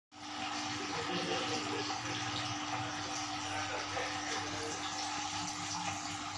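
Aquarium filter and aeration running: a steady rush of circulating water and bubbling, with a steady low hum underneath.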